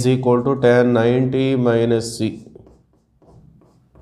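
A man talking for about the first two seconds, then faint, irregular scratches and taps of chalk writing on a blackboard.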